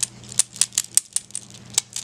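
Large flat green disc beads of a necklace, thought to be dyed bone, clacked together by hand in a quick, irregular run of light clicks. The beads are sounded to judge their material, and the clack is heard as not quite like bone, and then it kind of does.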